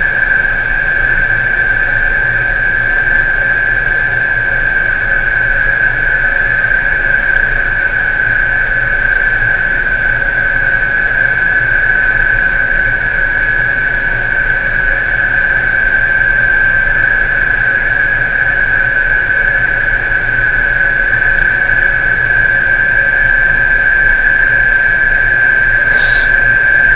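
Offshore crane machinery running steadily: a loud, unchanging high-pitched whine over a low hum.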